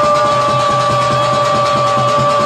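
Temple-festival music: a wind instrument holds one long steady note over fast drumming.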